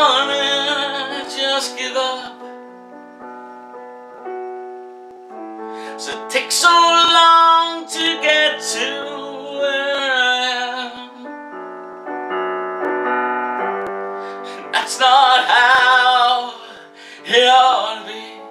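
A man singing with piano accompaniment: sung phrases at the start, through the middle and again near the end, with the piano playing alone in the gaps between them.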